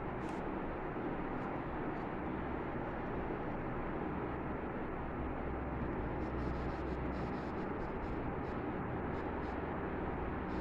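Steady background noise, a low hum and hiss with no clear events, and a few faint light ticks in the second half.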